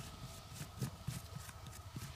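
Hand brushing and scraping loose dry soil: a quick run of irregular scuffs and soft knocks as the dirt is swept aside.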